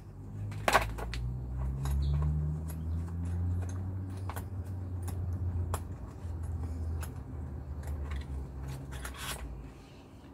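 Metal Torx keys and their plastic pack being handled: scattered light clicks and rattles, over a low steady drone that drifts a little in pitch.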